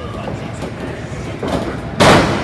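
Steady crowd and room noise echoing in a wrestling hall, with a thud near the end as a wrestler is taken down onto the ring mat.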